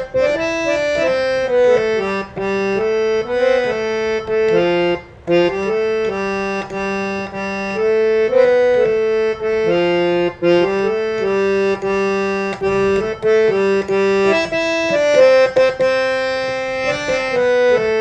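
Harmonium playing the bare melody of a Hindi film song note by note, a lower line of reeds moving along under the tune. The sound breaks off briefly about five seconds in and again near ten seconds.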